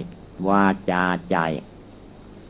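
A Thai Buddhist monk's voice giving a sermon: three slow spoken syllables in the first part, then a pause. A steady, faint high-pitched hum runs behind the voice throughout.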